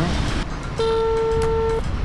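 A single steady, mid-pitched beep about a second long that starts and stops abruptly, heard over street background noise.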